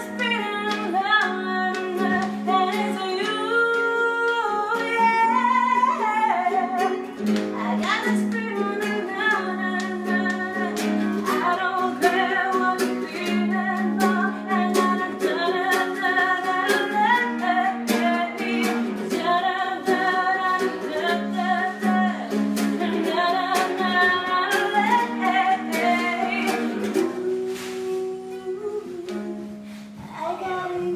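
A voice singing a melody over a strummed acoustic string instrument, with steady, even strumming. The playing eases off a little near the end.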